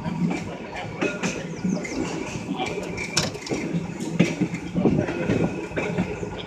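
1934 English Electric open-top Blackpool tram running on its rails, with irregular knocks and clicks over a steady hum.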